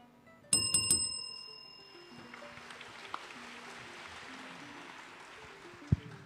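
A small bell is rung several times in quick succession about half a second in, its bright ringing fading within a second. Soft plucked background music continues under it, and a steady hiss of noise follows.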